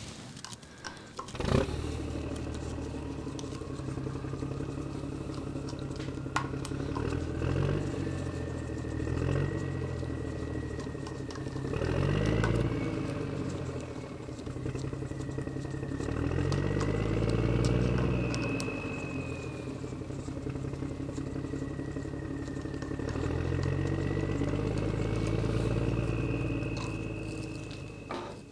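A motor engine running, its drone swelling and fading several times with rises and falls in pitch, under a few faint clicks.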